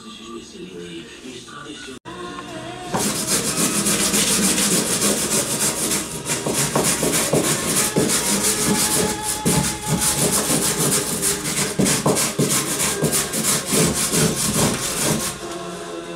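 A hand tool scraping and chopping rapidly along a wooden beam, stripping away its outer wood in a dense run of rasping strokes. The strokes start about three seconds in and stop shortly before the end.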